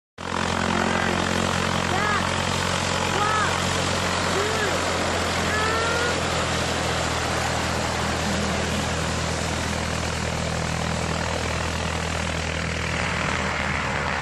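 Light single-engine propeller aeroplane's engine running steadily with a low drone, over a constant rushing noise. A few short high chirps sound in the first five seconds.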